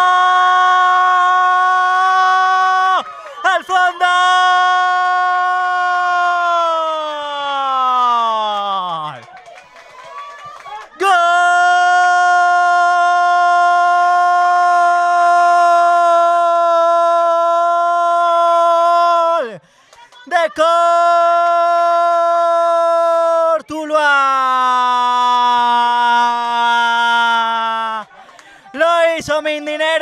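A man's drawn-out goal shout, "gol", from the football commentator, held loud on one steady note for several seconds at a time in about five long calls with breaths between. The longest lasts about eight seconds, some end in a falling slide of pitch, and the last drops to a lower note. It hails an equalising goal.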